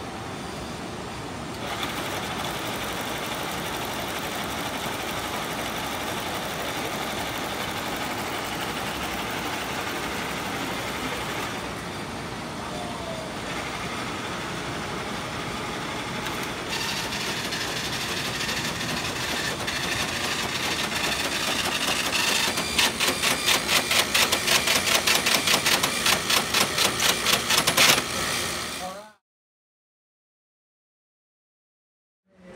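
IBM 1401 punched-card machinery running as a program deck is read into memory: the IBM 1402 card reader gives a steady mechanical whir and clatter. In the last several seconds this becomes a fast, regular clatter of about three beats a second, which then cuts off suddenly.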